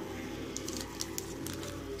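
Faint background music with a few soft crinkles and light clicks from a coin in a clear plastic flip being handled, about half a second to a second in.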